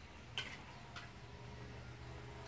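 Two light clicks about half a second apart, the first the louder, over a faint low steady hum.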